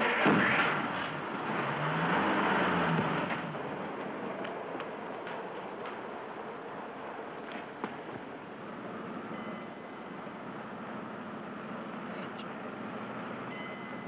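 A taxicab's engine pulling away from the curb. It rises in pitch over the first couple of seconds and then drops back, settling into a quieter, steady running noise as the car drives off.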